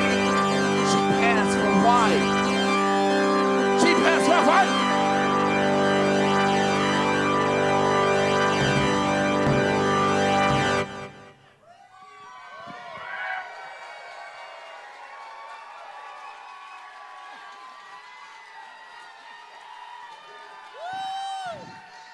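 A live band's loud drone-heavy piece, with held keyboard tones and a wavering voice, that cuts off suddenly about eleven seconds in. What follows is much quieter crowd noise with scattered voices and a few whoops.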